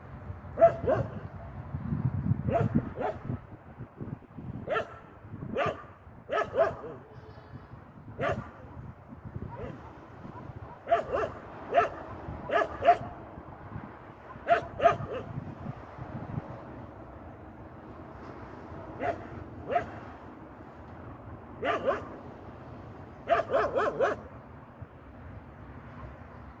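A dog barking off and on, in single barks and short runs of two or three, about a dozen groups spaced a second or more apart.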